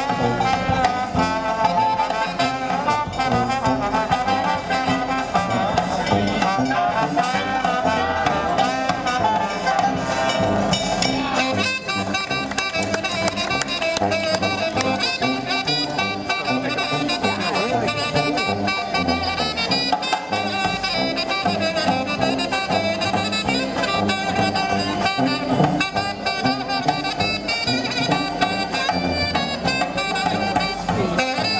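New Orleans jazz band playing live, with trumpet, trombone, saxophones and clarinet playing together over a bass drum.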